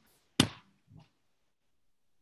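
A single sharp knock with a short tail, followed by a fainter knock about half a second later.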